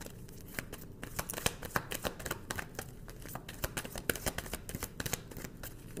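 A deck of tarot cards being shuffled by hand: a dense run of irregular flicks and clicks.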